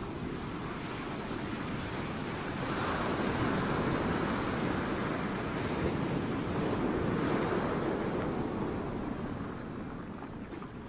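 Sea surf washing up onto a sandy beach: a steady rush that swells in the middle and eases off near the end.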